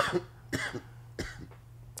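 A person coughing a few short times into a podcast microphone, over a low steady hum.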